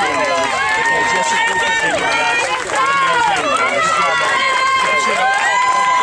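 Many young children's voices calling out over one another in long, drawn-out shouts, with light slaps of hands high-fiving.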